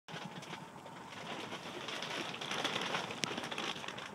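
Birds calling in the open air over a steady rustling background, with one sharp click about three seconds in.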